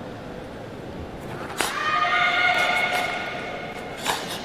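A loud, drawn-out shout with a sharp start about a second and a half in, held for about two seconds and dying away slowly: a karateka calling out the name of his kata, Kanku Sho, before he begins.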